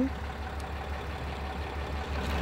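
Steady low rumble of an idling engine.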